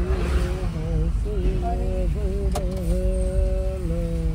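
Inside the cabin of a Maruti Suzuki A-Star, its small three-cylinder petrol engine and the tyres give a steady low rumble as the car drives slowly along. A wavering tune of held, gliding notes sits over it, and there is one sharp click about two and a half seconds in.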